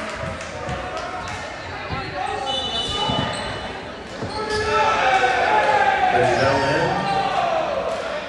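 Players' voices calling out in a large, echoing gymnasium, loudest in the second half, with a ball bouncing on the hardwood court in the first half.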